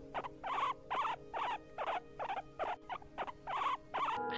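Palm squirrel calling: a rhythmic series of short, sharp chirps, about two to three a second.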